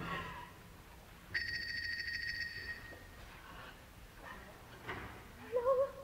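A telephone ring: a bright, rapidly pulsing ring lasting about a second and a half, after the orchestra falls away. Near the end a woman's voice gives a short wavering sung note.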